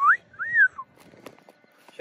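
A person's two-note wolf whistle: a quick rising note, then a second note that rises and falls away.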